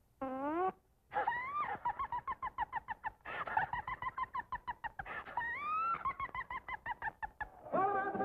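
Cartoon dog crying: a short rising whine, then a long quavering wail in rapid pulses of about eight a second, swooping up in pitch twice.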